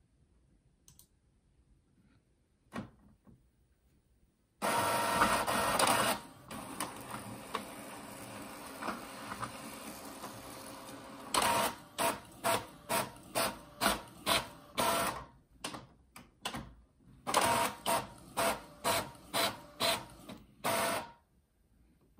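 Epson EcoTank ET-3850 inkjet printer printing plain-text pages. It is nearly quiet at first, starts up suddenly about four and a half seconds in with a steady whir, then gives a quick run of rhythmic pulses, about two a second, as the print head passes across the page, with a short pause between two runs.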